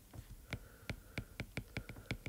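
Stylus tip tapping and clicking on a tablet's glass screen while handwriting, a quick irregular patter of light ticks, about five a second.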